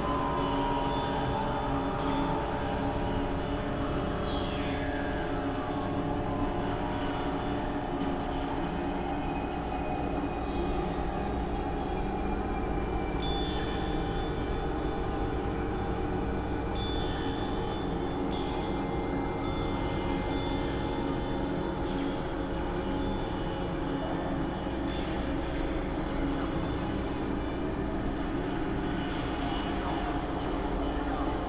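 Experimental electronic drone music: several sustained synthesizer tones held over a low, noisy rumble, with a high pitch sweep falling steeply about four seconds in.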